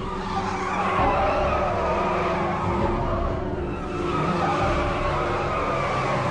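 Car tyres squealing in a long, sustained skid as a large sedan slides through a hard turn, with the engine running underneath.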